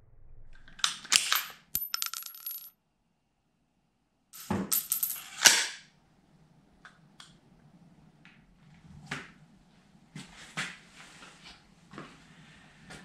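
Sharp cracks followed by the bright metallic clink and ring of a spent brass blank casing bouncing on a concrete floor, heard twice with a short silence between. Then come quieter scattered clicks and rustling.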